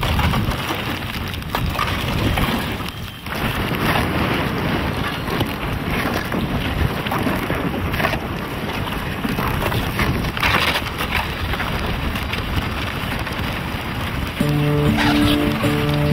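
Canoe hull pushing through slush ice and broken ice floes: continuous crunching, scraping and sloshing of ice against the boat. Music comes in near the end.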